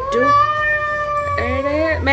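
A high-pitched voice holds one long, drawn-out note for nearly two seconds, while a second, lower voice slides upward to join it near the end.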